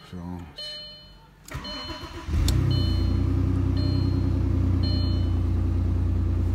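A car engine cranked briefly by the starter about two seconds in, catching at once and settling into a steady idle. A two-tone dashboard chime sounds repeatedly, about once a second, before and after the start.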